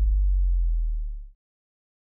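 Deep, steady bass tone left over from an electronic logo sting, fading out and stopping a little over a second in.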